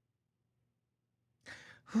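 Near silence, then a short intake of breath into the microphone about one and a half seconds in, just before speech resumes.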